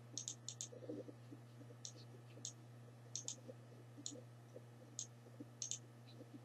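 Faint, sharp clicks, about a dozen, irregularly spaced and some in quick pairs, over a steady low hum.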